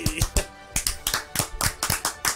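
Background music with steady held tones, overlaid with a quick run of sharp, irregular hand claps.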